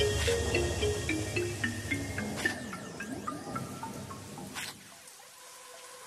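Hip hop track in a between-verse break: a descending run of short, plinking electronic notes over a fading beat, dying away to near quiet about five seconds in.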